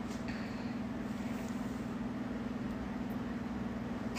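Steady low mechanical hum of a running machine, unchanging throughout.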